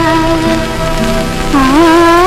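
Hindi song music: one long held melody note that bends and swoops about one and a half seconds in, over a low steady accompaniment.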